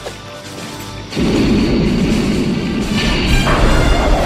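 Film soundtrack: orchestral score, then about a second in a sudden loud rushing roar sets in and holds. This is the flying DeLorean time machine's lift-off and time-jump effect.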